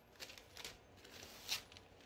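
Backing paper being peeled off a fusible-web-backed fabric heart: faint paper rustling and crinkling, with a sharper rustle about one and a half seconds in.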